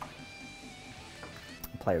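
Faint background music, with a couple of light knocks as a bass guitar is lifted off its floor stand.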